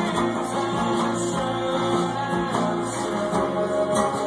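Acoustic guitar strummed in a steady rhythm, chords ringing on between strokes.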